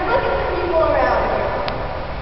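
Speech: a child's fairly high-pitched voice talking with rising and falling pitch.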